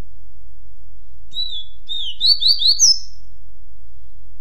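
Double-collared seedeater (coleiro) singing one phrase of the 'tui-tuipia' song style, starting about a second in: a clear whistled note, then a dipping note, three quick rising slurred notes, and a final higher note just before the three-second mark. A steady low hum lies under it.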